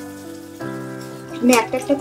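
Batter-coated bhetki fillet frying in oil in a steel karai, a fine steady sizzle. The oil is kept only moderately hot so the raw fish cooks through slowly. Background music comes in with a sustained chord partway in.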